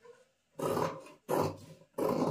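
Tailor's shears cutting through layered blouse fabric and lining, two short crunching snips.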